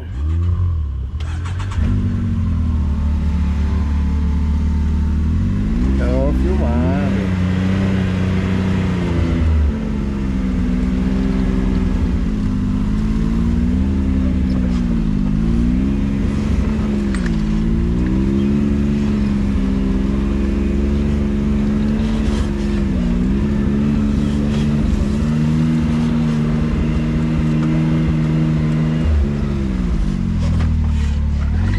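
Can-Am Maverick X3's turbocharged three-cylinder engine heard from the cab, running under load as the UTV crawls along a muddy trail, its pitch rising and dipping repeatedly with the throttle. It comes up to full level about two seconds in.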